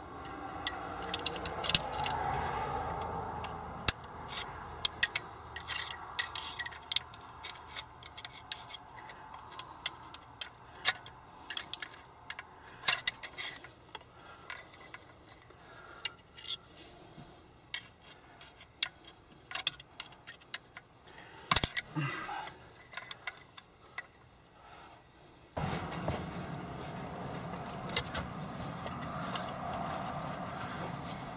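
A screwdriver and pry bar click, scrape and rattle against the spring retainer of an NV4500 shifter stub as the spring is forced down and the retainer is twisted. The clicks come irregularly, with one sharper knock about two-thirds of the way in. A steady background noise sits under the start and comes back near the end.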